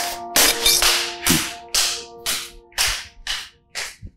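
Background film score: held synth chords under a swishing percussion hit about twice a second, fading out near the end.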